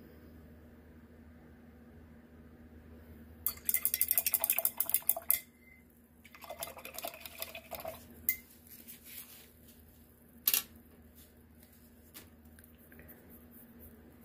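Rapid clinking and rattling of small hard items, like a brush and small glasses handled on a work table. It comes about three and a half seconds in, then there is a softer rustle, then a few sharp single clicks later on.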